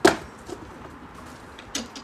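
A flexible rubber feed bucket dropped onto the yard floor, landing with a sharp thud, then near the end a short clack of a stable door's metal bolt being worked.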